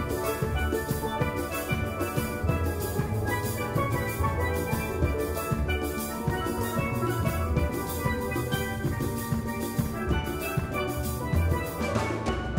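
A steel band playing a calypso: steelpans struck with mallets in quick, dense lines over a drum kit keeping a steady beat.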